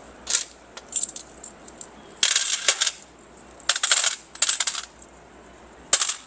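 A handful of Indian coins clinking and jingling together as they are passed and sorted in the hands, in about six short bursts.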